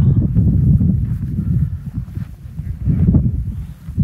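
Wind buffeting the camera microphone: a loud, uneven low rumble that rises and falls.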